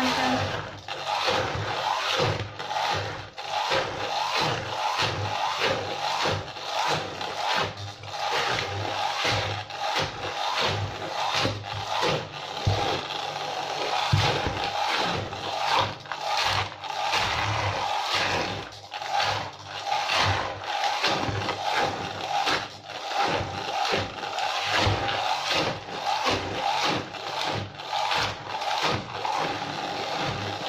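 Electric 3Mix stick blender running while it blends peeled bananas in an aluminium pot. The motor runs steadily, but its sound wavers and breaks up irregularly, many times a second, as it is worked through the fruit.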